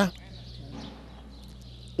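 A pause in a street interview: faint outdoor background noise with a steady low hum, and no distinct event standing out.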